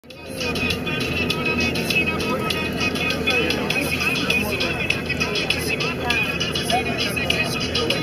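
Engine of a moving bus heard from inside the cabin, running low and steady, with music and voices in the background.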